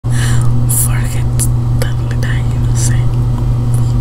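A woman whispering close to the microphone, in short hissy bursts, over a loud steady low electrical hum.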